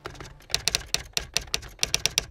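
Typing sound effect: crisp typewriter-style key clicks, about six a second, that resume after a short pause near the start.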